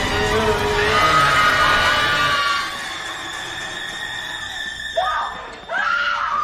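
A woman screaming over a tense horror-film score. The sound drops after about two and a half seconds to a quieter held tone, then fresh screams break in about five seconds in and again near the end.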